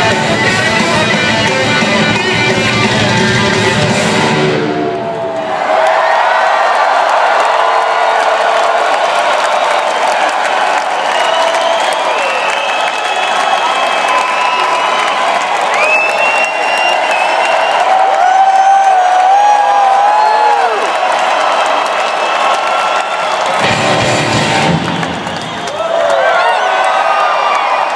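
Live rock concert through an arena PA. After about five seconds the bass and drums drop out, and a lone electric guitar plays a solo of bent and vibrato notes over crowd noise. The full band comes back in near the end.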